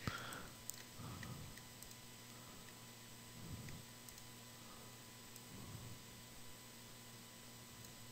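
Near silence with a few faint, scattered computer mouse clicks over a low steady hum.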